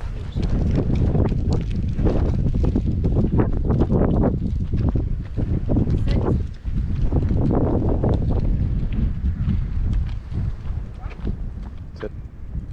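Wind buffeting the microphone of a body-worn camera, a loud uneven rumble that surges and eases, dipping briefly about halfway through, with scattered light knocks from walking.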